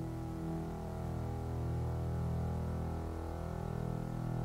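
Jazz-fusion band playing live: a held, low electronic chord with a fast low pulse underneath, a quiet, drone-like passage with no melody on top.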